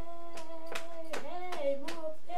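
A voice holds one long sung note, then slides into a couple of shorter, lower notes near the end. Sharp hand claps or slaps come irregularly, about two or three a second, over the singing.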